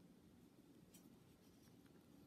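Near silence: faint rustling of a metal crochet hook working cotton yarn, with a faint tick about a second in and another near the end.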